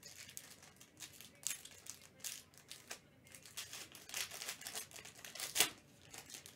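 Plastic wrapper of a trading-card pack crinkling and tearing as it is opened by gloved hands, in irregular rustles that grow busier in the second half.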